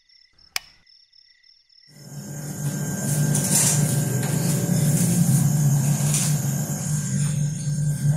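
Crickets chirping steadily, with one sharp click about half a second in. About two seconds in the chirping gives way to a much louder, steady low drone that lasts to the end.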